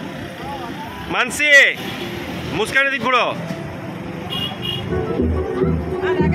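Two long whoops from the jeep's riders, rising and falling in pitch, about a second and a half apart, over the vehicle's running noise; music comes in near the end.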